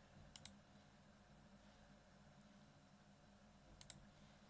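Computer mouse clicking: a quick double click just after the start and another near the end, in near silence.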